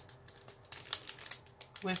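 Thin clear plastic bag crinkling as it is handled: a run of small, sharp crackles.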